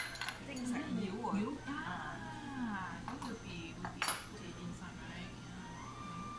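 Small ceramic condiment dishes and a spoon clinking: one sharp clink at the very start and another, ringing briefly, about four seconds in, with quiet talk in between.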